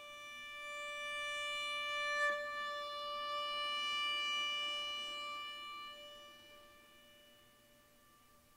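Solo viola holding one long bowed note that swells, then slowly fades away over the last few seconds.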